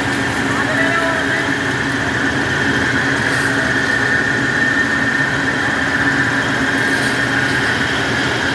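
Turmeric grinding machine (pulverizer with its electric motor and blower) running: a loud, even machine noise with a steady high whine that does not change.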